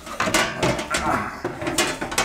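Thin painted sheet-steel side cover of a MIG welder being handled and lifted off its chassis: a run of light clanks, knocks and scrapes of thin metal.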